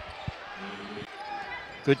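Basketball bouncing on a hardwood court, two short thuds near the start, over faint arena crowd noise.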